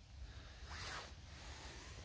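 Faint rustling swish of movement, swelling briefly about a second in.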